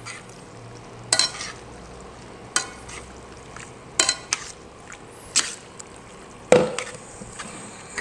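Metal tongs tossing spaghetti through a cheese sauce in a stainless steel pan: a soft wet stirring sound with about six sharp clinks of the tongs against the pan, the loudest about six and a half seconds in.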